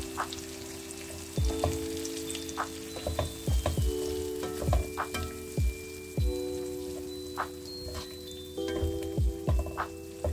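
Tomato and onion mixture sizzling as it fries in a pan, under background music of held chords with repeated short notes that drop sharply in pitch.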